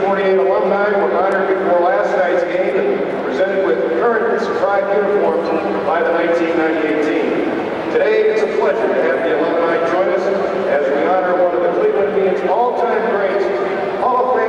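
A man giving a speech into a microphone over a stadium public-address system.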